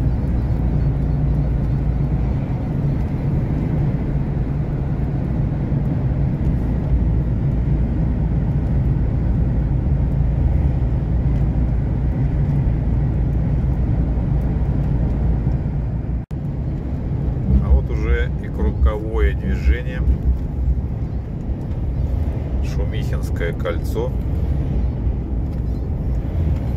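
Steady low drone of a truck's engine and tyres on the highway, heard inside the cab. About 16 seconds in it cuts off for an instant and resumes, with a voice heard over it twice.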